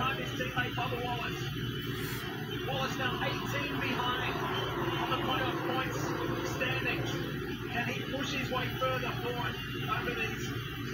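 A television broadcast of a NASCAR Cup race heard through a TV's speaker: commentators talking over the steady drone of the pack of stock-car engines.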